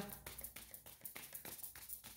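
Faint light taps and rustling of tarot cards being handled and laid on a table.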